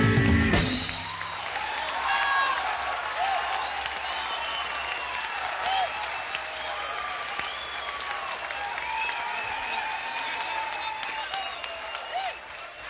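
A live blues-rock band ends its closing number on a final chord about a second in, followed by the audience applauding and cheering, with whistles rising and falling through the applause.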